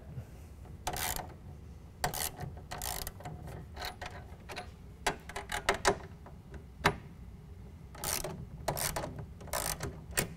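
Hand socket driver loosening the 7/16-inch nuts on the tonneau cover's aluminium rail bolts. It makes short metallic clicks and rasps about once a second, with small knocks of metal on the rail between them.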